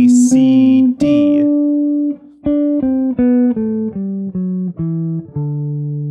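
Electric guitar, a Gibson Les Paul, picking the G major scale one note at a time from D: higher notes first, then a steady stepwise descent of single picked notes from about two seconds in, ending on a low D held and ringing near the end.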